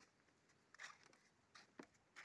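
Near silence, with a few faint, short ticks about a second in and again near the end.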